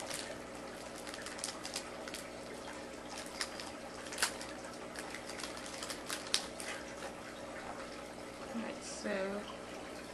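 Small plastic package being opened and handled by fingers: scattered light crinkles and clicks throughout, over a faint steady room hum.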